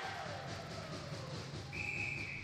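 Referee's whistle blown once near the end, a single steady high tone of about half a second that signals a stoppage in play, over the low background noise of the rink.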